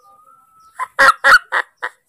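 Newborn baby monkey crying for its mother: a faint thin whine, then about a second in a quick run of five short, loud, high cries.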